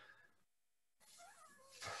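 Near silence, a pause between words, with a faint wavering tone a little after a second in. A voice starts again at the very end.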